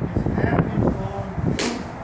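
A single sharp crack about one and a half seconds in, over a low, murmuring background.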